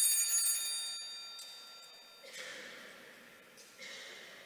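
Altar bells rung at the elevation of the chalice at the consecration: a cluster of small bells rings out high and clear and dies away over about two seconds, followed by two fainter jingles near the middle and end.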